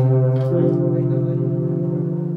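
Live jazz improvisation: a bass instrument holds long, steady low notes, stepping up to a higher note about half a second in and sustaining it.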